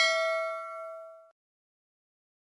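Notification-bell 'ding' sound effect from a subscribe-button animation, ringing with several bell-like tones and fading, then cut off abruptly just over a second in.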